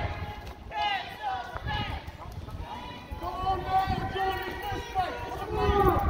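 Indistinct voices of several people talking outdoors, with a low rumble underneath.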